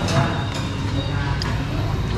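Restaurant room sound: a steady low background rumble with faint distant chatter and two light utensil clicks against a bowl.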